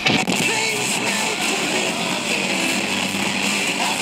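Guitar music playing back from a Sony Walkman, heard through small speakers set in front of the microphone.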